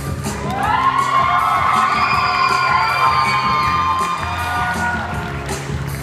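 Music playing over a hall sound system, with a crowd cheering and shouting over it from about half a second in, loudest through the middle.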